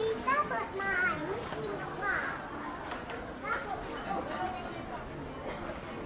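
Young children's voices talking and calling out, high-pitched, over the general chatter of shoppers.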